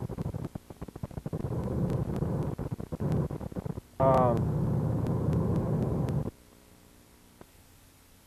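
Wind rumbling over the microphone of a camera in a moving car, gusty and choppy at first and then steady, cutting off abruptly after about six seconds. A short sound falling in pitch breaks in about four seconds in.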